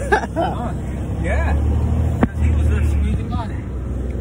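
Straight box truck's engine running, a steady low rumble heard from inside the cab, with brief bits of laughter and voice and a sharp click about two seconds in.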